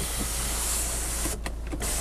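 Electric motor of a Hyundai Santa Fe's panoramic sunroof running as the roof opens, a steady whir briefly broken about one and a half seconds in.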